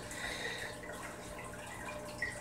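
Faint, steady trickling of water.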